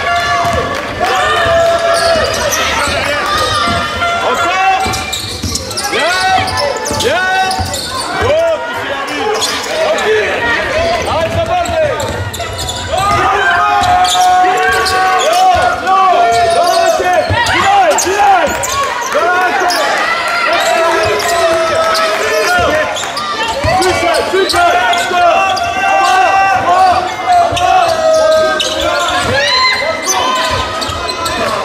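Basketball game in a gymnasium: sneakers squeaking over and over on the hardwood court as players run and cut, a ball being dribbled, and voices from players and spectators.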